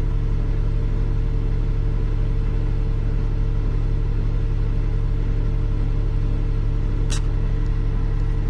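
A crane's engine idling steadily, a constant low hum heard from inside the operator's cab. A single sharp click comes about seven seconds in.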